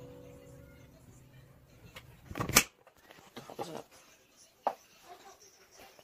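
A digital piano chord dies away after the playing stops. About two and a half seconds in comes a loud, brief rustling burst that cuts off suddenly, followed by a few faint clicks and handling noises.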